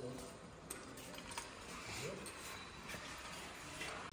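Faint indoor ambience of a large store, with a distant voice about two seconds in and a few light clicks.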